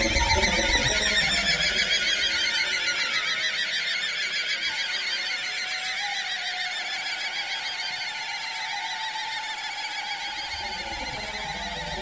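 Rubber balloon held up to the microphone, giving one long, high, wavering squeal whose pitch slowly sags and rises again while it gradually grows quieter.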